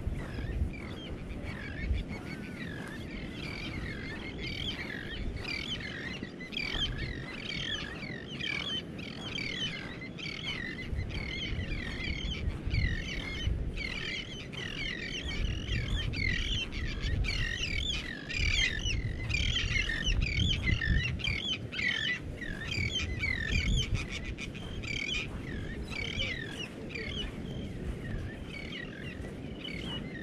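A flock of birds chirping, with many short overlapping calls that grow thickest in the middle and thin out towards the end. Underneath runs a low, uneven rumble of wind on the microphone.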